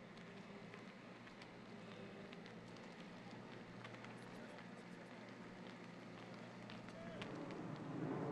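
Faint footsteps of a group walking on asphalt, scattered light clicks over a steady low background hum, with a louder noisy sound building near the end.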